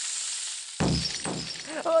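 A long, steady snake hiss sound effect. About a second in, a sudden crash-like hit sounds and dies away quickly.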